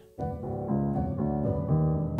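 Music: a sampled piano chord loop playing back, coming in just after a brief gap at the start, with held chords that change every half second or so.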